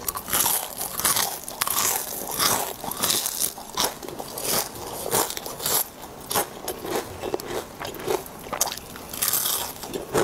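Close-miked eating of crispy batter-fried enoki mushroom clusters: crunching bites and chewing, a quick irregular run of crisp crackles.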